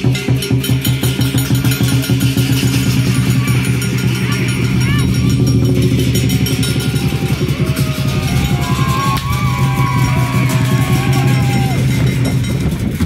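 Lion dance percussion: a large drum beaten in a fast, unbroken run of strikes with cymbals clashing over it, loud throughout. Voices from the crowd rise over it in the second half.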